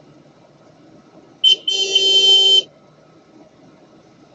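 A vehicle horn sounding in street traffic: a short beep about one and a half seconds in, then a longer blast of about a second.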